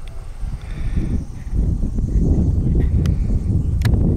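Wind buffeting the microphone: a low, uneven rumble that grows louder about a second and a half in, with a couple of sharp clicks near the end.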